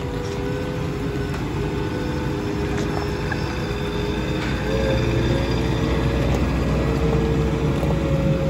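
Merlo P27.6 compact telehandler's diesel engine running as the machine drives off, growing louder and heavier about halfway through.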